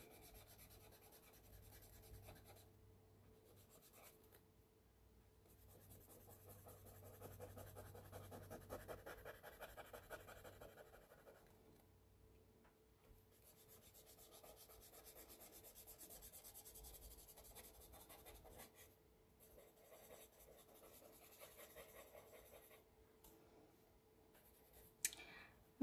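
Faint rubbing of a cotton swab smudging pencil graphite across drawing paper, in quick repeated strokes that come in two longer runs.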